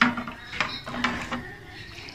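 Light clinks and knocks of a steel-lined serving dish and utensils being handled: a sharp knock at the start, then a few lighter clicks over the next second and a half.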